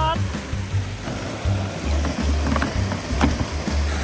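Background music with a repeating low bass line, over the rush of stream water running across rocks.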